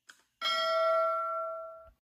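A single bell-like chime struck about half a second in, ringing on several clear tones and slowly fading for about a second and a half before it cuts off.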